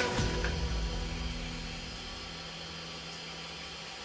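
Background music dying away in the first second or two, leaving a faint, steady low hum.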